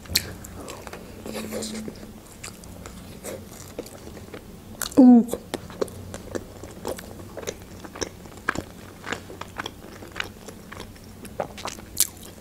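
Close-miked bite into a toasted lavash wrap filled with chicken strips, cheese and pickles, then steady chewing with many small wet clicks. There is one short vocal sound about five seconds in.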